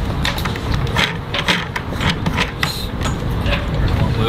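Steady low rumble of wind on the microphone, with scattered clicks and knocks as the windlass's handheld remote and its coiled cord are pulled out of the anchor locker.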